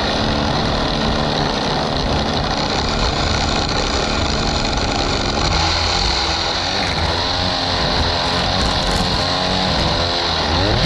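Two-stroke gas string trimmer running at high revs, the engine pitch wavering up and down as the throttle is worked while the line cuts grass.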